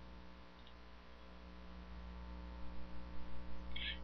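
Steady low electrical mains hum with a faint hiss from the recording chain, getting slightly louder near the end.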